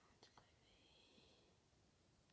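Near silence: faint room tone, with a couple of soft clicks in the first half second.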